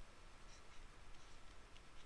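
Faint scratching of a pen writing, barely above room tone, as a box and a tick are drawn, with a faint steady high tone underneath.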